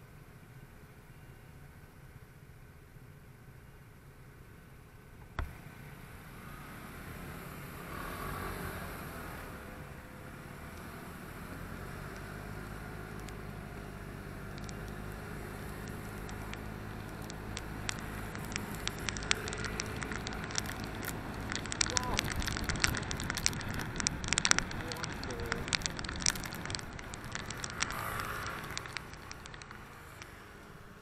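Motor scooter pulling away from a stop and riding on a wet road. The engine hum and the tyre and wind noise grow louder from about a quarter of the way in, and dense crackling clicks hit the microphone through the latter half.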